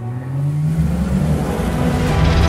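Sports car engine accelerating, its pitch rising steadily.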